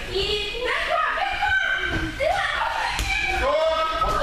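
Children's voices shouting and calling out in several high-pitched cries, rising and falling, during a running game in a large hall.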